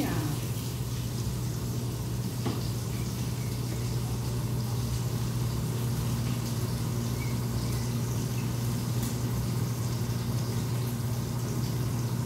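A steady low hum with a faint even hiss, and a single faint knock about two and a half seconds in.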